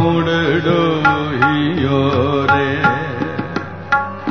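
Classical Sikh kirtan: a gliding, ornamented melodic line, most likely the singer's voice, sung over a steady drone. Light percussion strokes come in more often toward the end.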